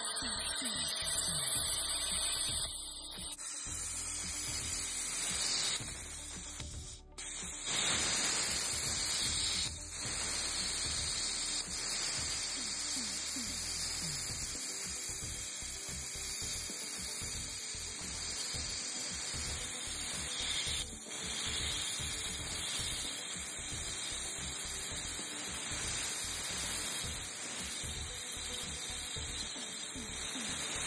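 Background music over the steady hiss of a cutting torch fitted with a gouging nozzle, working off excess weld. The hiss breaks off briefly about seven seconds in and again around twenty-one seconds.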